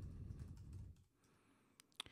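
Faint typing on a computer keyboard: a quick run of keystrokes that stops about a second in, then a lone click near the end.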